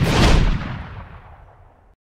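Closing music ends on a last loud hit that dies away over about a second and a half, fading out as the video ends.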